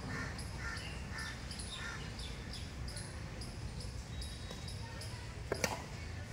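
Badminton racket striking the shuttlecock: two sharp clicks close together about five and a half seconds in. Birds chirp steadily in the trees, with short high calls repeating every half second or so.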